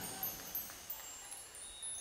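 Faint, high tinkling chimes: a scattering of short ringing notes.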